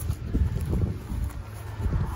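Wind buffeting the microphone outdoors: a low, uneven rumble.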